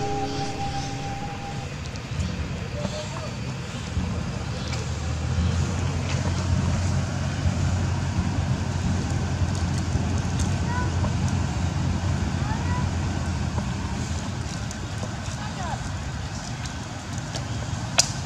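A vehicle engine running on the road, a steady low rumble that swells about four seconds in and eases off near the end, with a few faint short high squeaks over it.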